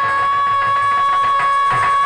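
Stage folk music with one high note held steadily and unwavering, over faint percussion.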